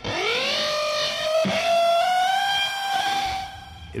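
Electric guitar playing a single long note that slides up in pitch at the start, then holds and rings for about three seconds before fading.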